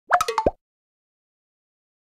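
Short sound effect for the animated title: a rapid run of four or five short pitched blips, the first sweeping upward, all over within about half a second, then silence.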